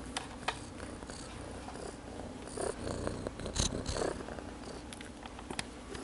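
Siamese cat purring steadily, with a few soft rustles and clicks in the middle.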